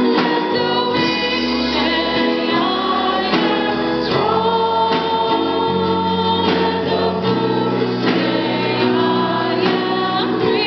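Choir singing a gospel song with keyboard accompaniment; sustained bass notes change about every three seconds under the voices.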